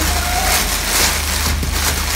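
Clear plastic wrapping crinkling and rustling as it is handled, over a steady low hum.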